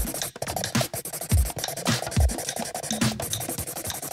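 A pencil scratching over cardboard as it traces an outline, with background music underneath.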